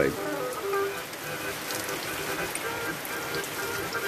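Steady rain falling, an even hiss with scattered small drip ticks.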